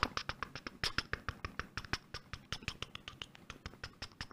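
Typing on a computer keyboard: a quick, uneven run of keystrokes, roughly a dozen a second, fairly faint.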